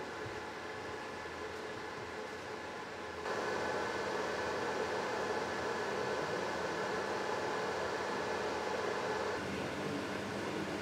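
Steady machine hum with several steady tones, like ventilation fans and air-handling equipment running in an indoor grow room; it steps up a little in level about three seconds in.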